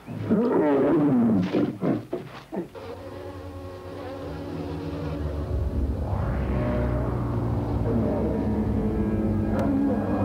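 A few loud, wavering cries in the first two or three seconds, then a low, buzzing drone of held tones from an eerie horror-film score that swells gradually and holds.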